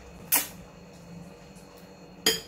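A single sharp mouth click from chewing pork tail, about a third of a second in, then only quiet chewing.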